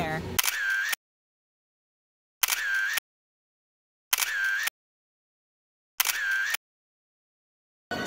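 Camera shutter click sound effect, played four times about every 1.8 seconds, each about half a second long, with dead silence between the clicks.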